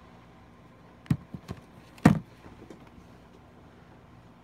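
A few short knocks: three quick ones about a second in, then a louder one about two seconds in, followed by a few fainter ticks.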